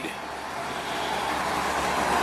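Road traffic going by, a steady rush that grows slightly louder as a vehicle approaches.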